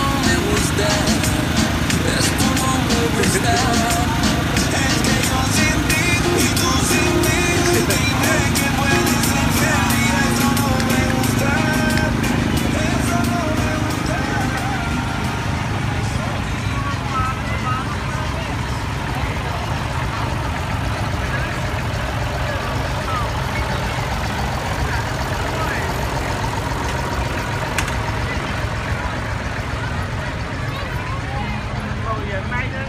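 Old tractor engine running as it pulls a parade float past, mixed with people talking and music.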